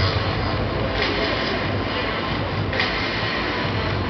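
Projection show's soundtrack played over loudspeakers: a dense, steady mechanical rumble with a hissing surge about every two seconds.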